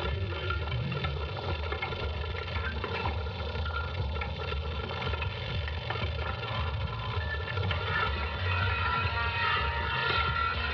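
A steady ambient soundscape for a stage performance: a continuous low rumble under a dense layer of held tones, swelling slightly near the end.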